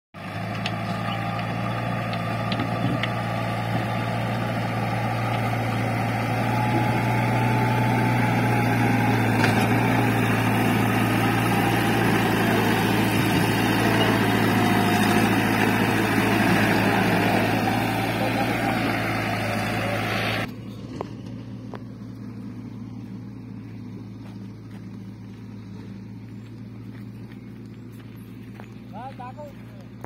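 Backhoe loader's diesel engine running hard as the machine pushes earth with its lowered front bucket, grading a dirt road. About twenty seconds in the sound drops suddenly to a much quieter steady low engine hum.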